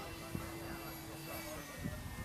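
Radio-controlled model jet flying overhead: a faint, steady whine from its motor.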